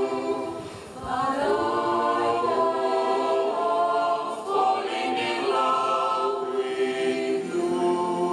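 Mixed choir singing a cappella in harmony, moving through held chords, with a brief drop in level about a second in before the voices come back in.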